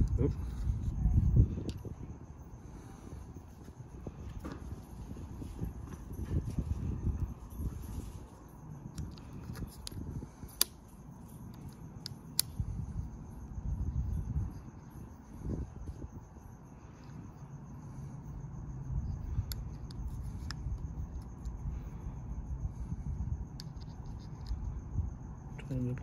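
Hands working a small Allen key into a plastic phone mount: uneven rustling and handling noise, with a few sharp light clicks about ten and twelve seconds in, over a faint steady high-pitched tone.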